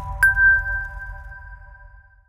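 Closing logo jingle: a higher chime note is struck about a quarter second in over a held chord of lower chime tones, and they all ring on and fade away.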